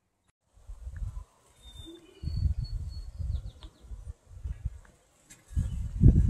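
Wind buffeting the microphone in irregular low rumbles, with a few faint high bird chirps in the background.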